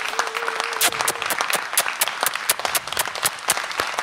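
Applause: many hands clapping quickly and irregularly, the ovation at the end of a live song.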